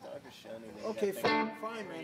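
Electric guitar being played, its notes bending down in pitch, with a voice alongside.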